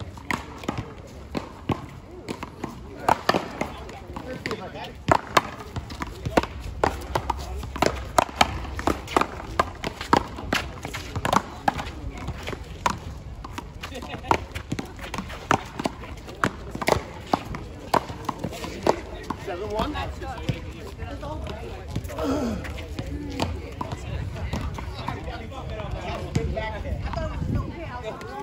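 Paddleball rally: a hard rubber ball being struck by paddles and smacking off the concrete wall in quick, irregular knocks, with players' shoes scuffing on the court. The knocks thin out near the end as voices take over.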